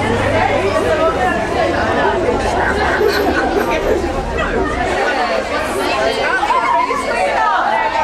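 A street crowd of girls and young women chattering, many voices talking over one another at once.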